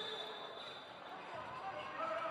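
Faint, even background noise of an indoor handball hall: low crowd and court ambience from the match footage.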